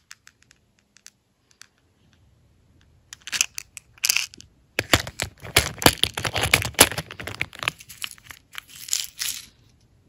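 Small clear plastic storage compartments being handled and pulled from an organizer tray: a run of plastic clicks and rattling that starts about three seconds in and stops shortly before the end.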